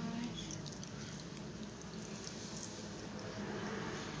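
Faint, soft patting and squishing of fingertips pressing a wet sheet face mask against the skin.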